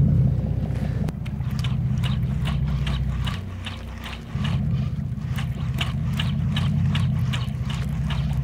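Spinning reel cranked fast as a jig is worked, its gears making a quick, even clicking rhythm over the steady low drone of a boat engine running. The drone drops away briefly about three and a half seconds in.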